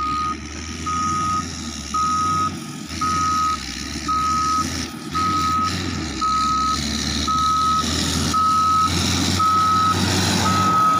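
Caterpillar motor grader reversing: its backup alarm beeps about once a second over the rumble of the diesel engine, growing louder as the machine comes closer.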